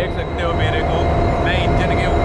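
A goods-train locomotive running with a steady, loud low rumble and a steady whine, with people's voices over it.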